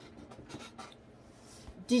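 A pause in speech filled with faint rustling and a few soft taps, like a sleeve and hand moving close to the microphone; a woman's voice starts again right at the end.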